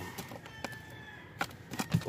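Bigeye scad being handled and dropped on a plastic board, giving a few sharp taps and slaps, the loudest near the end. A faint, long, steady high-pitched tone sounds in the background.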